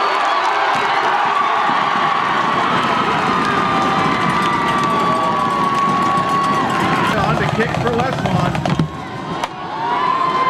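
Football crowd cheering and shouting as a touchdown run reaches the end zone, with one long held call carrying above the cheers for most of the time. The cheering drops away briefly near the end.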